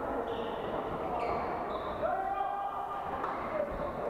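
Badminton play on several courts in a large, echoing sports hall: shoes squeaking on the court floor and rackets striking the shuttlecock, with players' voices calling across the hall.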